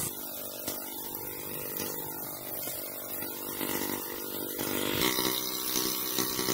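Small gasoline engine of a water pump running steadily, feeding a sluice box, with water splashing through it; the engine note shifts slightly about five seconds in.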